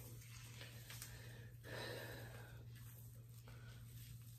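Faint rustling of hands working mousse-coated hair around a foam flexi rod, with a small tap about a second in, over a steady low hum.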